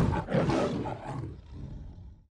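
A lion roaring, loud near the start and fading away over the next second and a half.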